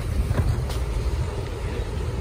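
Wind buffeting the camera microphone, a steady, uneven low rumble.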